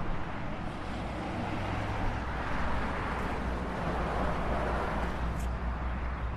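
Steady city street ambience: road traffic noise with a low rumble, and a short, high click about five seconds in.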